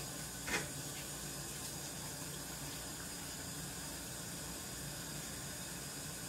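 Kitchen tap running steadily into a stainless steel sink during washing up, with one short, louder sound about half a second in.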